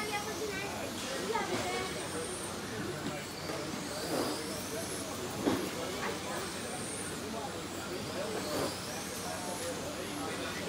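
Electric 1/10-scale RC touring cars racing on carpet: motor whines that rise and fall as the cars pass, over a steady hiss of tyres and drivetrains.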